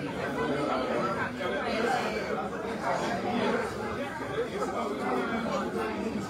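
Many people talking at once, a steady hubbub of overlapping conversations with no single voice standing out.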